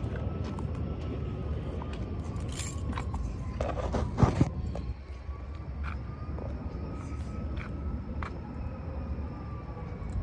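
Clicks and knocks from a phone being picked up and handled, loudest a little past the middle, over a steady low outdoor rumble.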